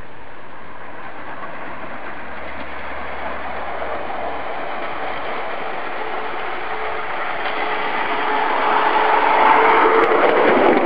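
Backyard ride-on railroad motor car with a single 350-watt electric motor running on 24 volts, its steel wheels rolling along the small track, with a faint steady motor whine. It grows louder over the last few seconds as it comes close.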